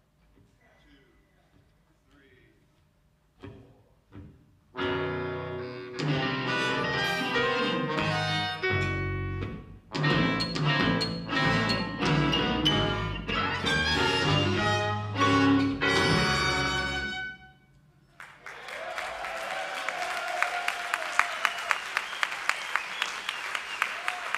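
Horn-led avant-rock band (saxophones, trumpet, trombone, bass clarinet, guitar, bass, keyboards and drums) plays a loud ensemble passage of about twelve seconds. It starts about five seconds in, breaks briefly midway and cuts off abruptly. About a second later the audience applauds.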